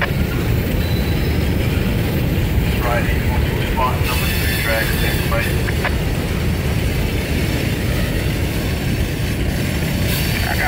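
Freight train of tank cars rolling slowly past: a steady, loud low rumble of wheels on rail, with a few short high chirps about three to five seconds in.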